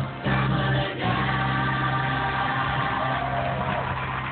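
A band and a large group of singers performing a 1970s pop song together, with a long held chord from about a second in.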